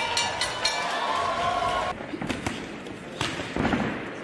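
Boxing ring bell struck rapidly, about four clangs a second, each ringing on, signalling that the fight has been stopped. The clanging ends about a second in and its ring dies away. A few sharp knocks and dull thuds follow in the second half.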